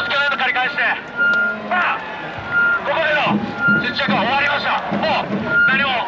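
A man speaking in Japanese to the crowd. A steady, high beep-like tone sounds briefly about five times in the pauses between his phrases.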